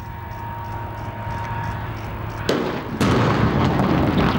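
Explosive demolition charges going off on a harbour container crane: a sharp bang about two and a half seconds in, then a louder blast half a second later, followed by continuing heavy noise.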